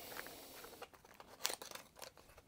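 Faint rustling and a few light, sharp clicks as a new spark plug is taken out of its small cardboard box, with the clicks clustered in the second half.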